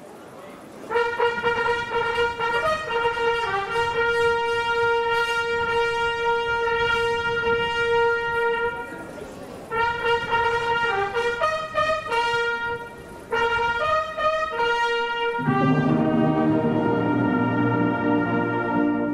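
Brass band playing a fanfare-like call: a single brass line enters about a second in with a long held note, pauses briefly, then goes on in short phrases, and the full band comes in with low brass chords near the end.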